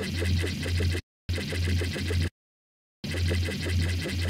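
A wavetable synthesizer (Serum) plays the same low bass note three times, each held about a second, with digital silence between. An LFO synced to the beat sweeps the wavetable position, so each note carries a fast rhythmic, metallic warble, the "doo-doo-doo" future-bass sound.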